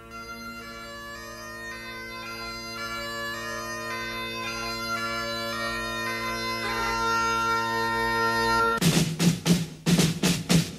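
Bagpipes playing a slow tune over their steady drones and growing louder, with drums coming in with heavy beats near the end.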